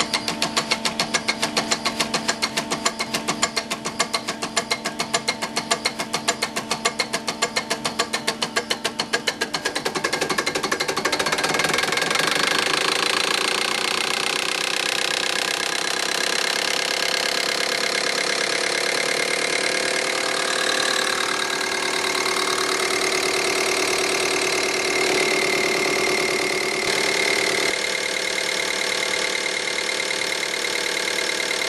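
Delphi DP200 rotary diesel injection pump running on a Hartridge 700 test bench, with a rapid, even ticking for about the first ten seconds. Then the speed rises and the ticks merge into a steady, higher-pitched running noise.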